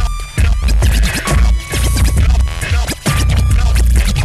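Hip-hop beat with deep, sustained bass notes and turntable scratching: the record is dragged back and forth in quick sliding strokes.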